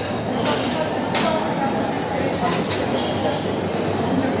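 Busy buffet dining room: a babble of many voices with dishes and cutlery clinking, including one sharp clink a little over a second in.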